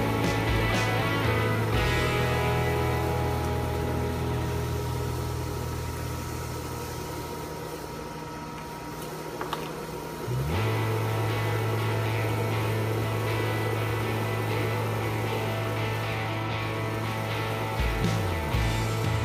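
Background music: held chords over a steady low bass note. It sinks slowly in loudness, then comes back fuller on a new bass note about ten seconds in.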